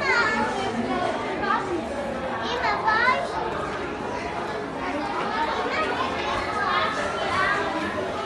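Indistinct chatter of several voices, children's among them, in a large echoing hall, with a high-pitched child's voice rising sharply about three seconds in.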